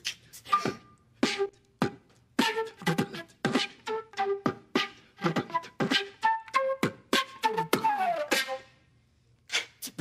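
Beatboxed drum sounds made by a voice into a microphone, with a concert flute playing short staccato notes over the beat. Near the end the flute plays a falling run of notes.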